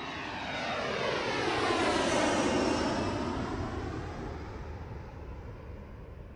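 An aircraft passing overhead, used as a transition sound effect: a rushing sound with a sweeping, phasing tone that swells over the first two seconds or so and then slowly fades away.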